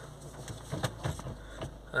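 Range Rover Evoque diesel engine idling steadily just after being started, a low even hum with a few light clicks.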